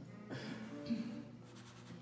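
Soft pastel stick rubbing and scratching on paper as colour is worked into a patch, with one light tap about a second in. Faint background music underneath.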